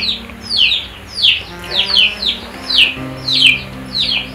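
A bird chirping over and over, short calls sweeping downward, about two a second, over background music with low sustained notes that shift a couple of times.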